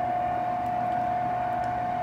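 An Emeril Lagasse air fryer running, its fan giving a steady hum with one constant whining tone.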